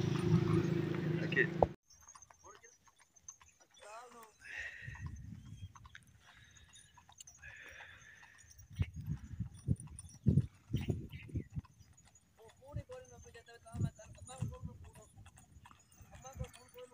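Loud steady rumble of riding along on a loaded animal-drawn cart, cutting off suddenly after about two seconds; then faint irregular hoof clip-clop of a cart-pulling draught animal, with scattered faint calls and distant voices.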